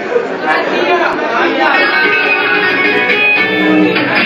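Electric guitar coming in to start a live rock song, held notes building up over audience chatter.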